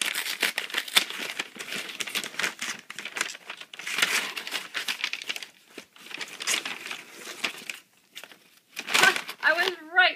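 Brown kraft-paper wrapping crinkling and tearing as a package is unwrapped by hand, in irregular rustles that pause briefly about eight seconds in. A woman's voice starts near the end.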